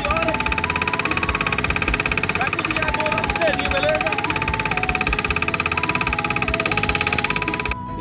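Small engine on a wooden fishing boat running steadily under way, with a fast, even firing pulse. It cuts off abruptly just before the end.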